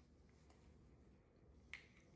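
Near silence, room tone, with one short, faint click near the end: a metal fork touching a plate.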